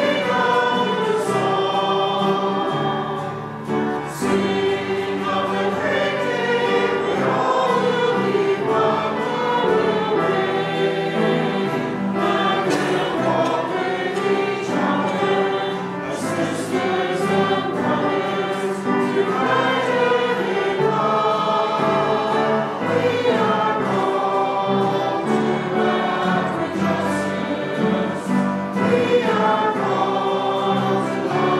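A choir singing a piece of sacred music with several voices in harmony over sustained low notes, at a steady level.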